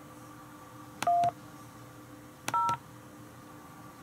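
Skype dial-pad keypress tones (DTMF) sent into an automated phone menu while a phone number is entered: two short two-tone beeps, a "1" about a second in and a "0" about two and a half seconds in, each starting with a click.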